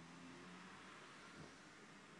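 Near silence: room tone, with a faint brief sound about one and a half seconds in.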